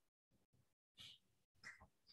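Near silence, with two very faint brief sounds, about a second in and again shortly before the end.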